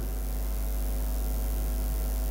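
Steady low electrical mains hum in the audio, unchanging, with no speech over it.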